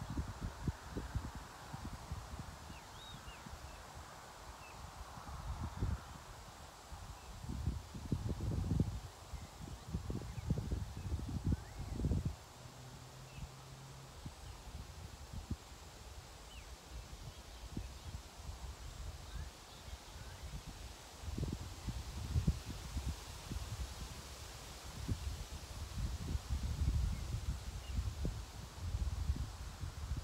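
Wind buffeting the microphone in irregular gusts of low rumble, with a few faint, short bird chirps.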